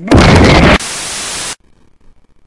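Very loud blast of harsh static noise for under a second, dropping to a quieter steady hiss that cuts off suddenly about a second and a half in.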